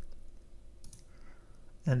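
A computer mouse clicking faintly, with one click a little under a second in.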